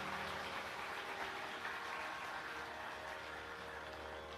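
Tanpura drone ringing on alone between vocal phrases, a steady cluster of tones fading slowly, over a faint hiss of hall noise.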